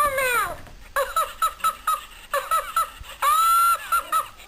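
An Elmo plush toy's electronic voice laughing in a high-pitched giggle: short repeated laughs, falling in pitch at the start and ending in one long held squeal near the end.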